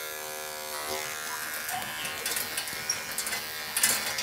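Cordless electric pet clipper running steadily as it shaves matted fur from between a dog's paw pads. There is a brief knock near the end.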